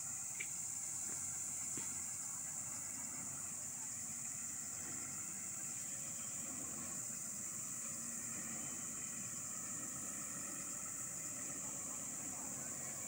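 Distant truck engine running at low revs as the tractor-trailer is slowly manoeuvred, under a steady high-pitched hiss.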